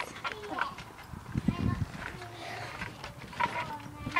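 A child bouncing and landing on a trampoline mat: soft thumps and knocks, the heaviest about a second and a half in.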